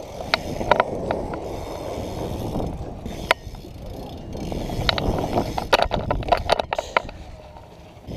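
BMX bike tyres rolling on the concrete of a skatepark, a steady rumble that swells and fades, with several sharp clicks and knocks from the bike, a cluster of them about six seconds in.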